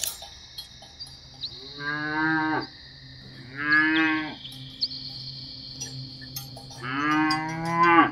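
A cow mooing three times, each call lasting about a second, with a steady high-pitched tone underneath.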